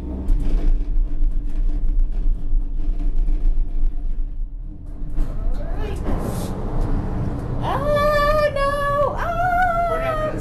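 Gondola cabin running through the lift's top terminal, with a steady low rumble from the station machinery and haul rope. From about three-quarters of the way in, a voice holds a few drawn-out notes over it.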